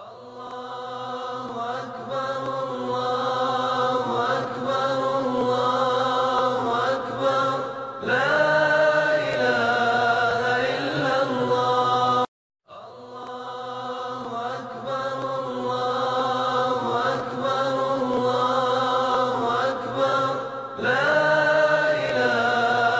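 A solo voice chanting a slow, drawn-out melody with long held notes and gliding ornaments. It breaks off for a moment about twelve seconds in, then the same passage starts again.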